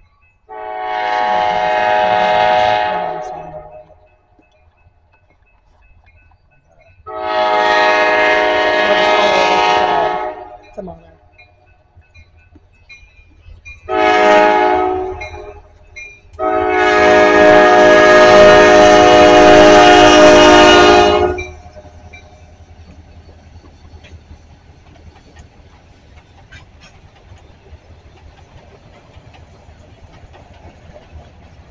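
Diesel locomotive air horn sounding the grade-crossing signal: two long blasts, one short, then a final long blast held about five seconds. The low rumble of the freight train rolling over the crossing follows.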